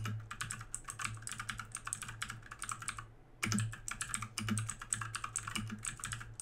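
Fast typing on a 1stplayer FireRose mechanical keyboard with blue switches: a dense run of clicky keystrokes, with a brief pause about halfway through.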